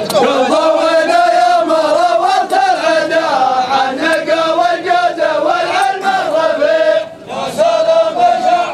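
Men's voices chanting a poem together in unison, a drawn-out melodic group chant with a short break for breath about seven seconds in.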